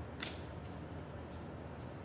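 Tarot cards being laid down on a table: a short, sharp card tap about a quarter second in, then two faint ticks, over a low steady hum.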